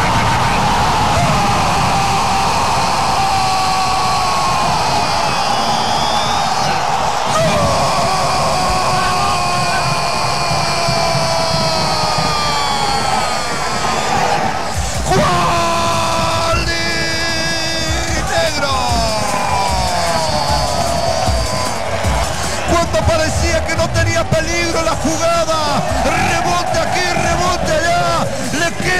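Broadcast audio of a football goal: long, drawn-out gliding vocal cries, typical of a commentator celebrating a goal, over music and a steady bed of stadium noise.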